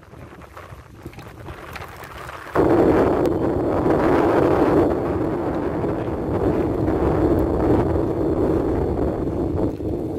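Boat engine throttled up sharply about two and a half seconds in, then running loud and steady.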